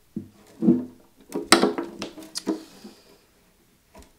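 Early-1960s Hagström acoustic guitar being turned over on a padded workbench: a string of knocks and rubs from the wooden body and neck, with brief ringing from the strings, loudest about a second and a half in.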